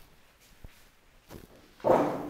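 A few faint knocks, then near the end a sudden loud thump with a short rough scrape that dies away.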